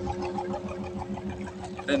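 A small boat engine running at idle: an even, low, rapid pulse with a constant hum over it.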